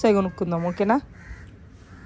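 A person's voice for about the first second, a few quick vocal syllables that the recogniser did not take as words, then only faint background for the rest.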